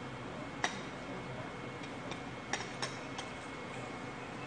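Metal chopsticks clicking against small ceramic side-dish plates: a few sharp, separate clicks, the loudest about half a second in and a pair near three seconds, over a steady low room hum.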